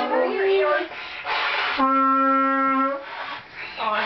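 A herald trumpet is blown in long held notes. A note fades out shortly after the start, a short noisy blast comes about a second in, and then a steady note holds for just over a second.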